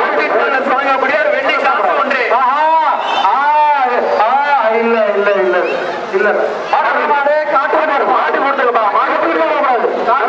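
A man talking loudly and continuously, in the manner of an arena commentator, his voice swooping up and down in pitch a few seconds in.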